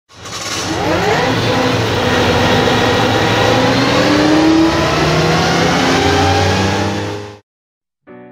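An engine revving, its pitch climbing in rises over a rushing noise, loud throughout, then cutting off suddenly near the end.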